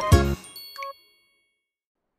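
Animated-cartoon song music ending on a final chord about a third of a second in, followed by a short chime sound effect of a few bright ringing notes.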